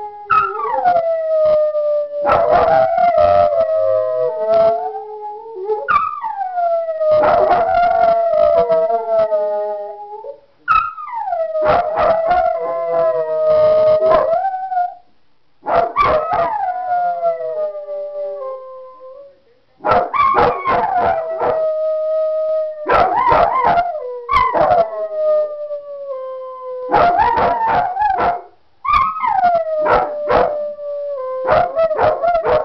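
A dog howling, one long howl after another, each opening high and sliding down into a held note, with short breaks between them.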